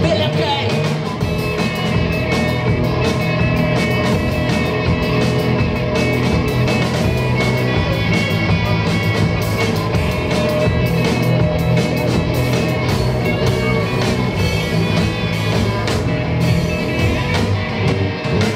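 Live rock band playing: two electric guitars, bass guitar and drum kit amplified through a stage PA, loud and unbroken.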